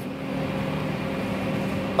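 2008 Buick Lucerne's engine idling, purring quietly and steadily with a low, even hum.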